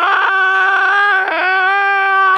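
A man's long, loud, high-pitched wail, a drawn-out "aaah" held at nearly one pitch, with a brief dip about a second and a quarter in.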